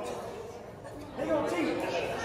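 Indistinct chatter from a seated audience, several voices overlapping. It eases off through the middle and picks up again a little past a second in.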